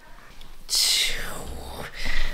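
A woman's breathy whisper to a baby, about a second long, starting a little before the middle and trailing off.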